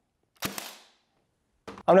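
A cordless brad nailer fires a single nail into a plywood block: one sharp crack with a brief ringing tail, about half a second in.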